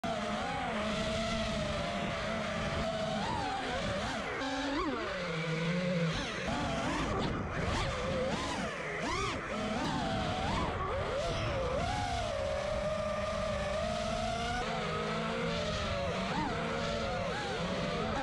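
FPV quadcopter's brushless motors and propellers whining, the pitch rising and falling again and again with the throttle.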